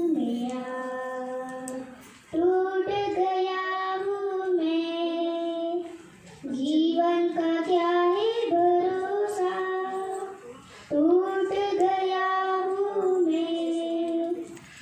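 A young girl singing a devotional song into a microphone, in long held phrases with short breaths between them, about 2, 6 and 11 seconds in.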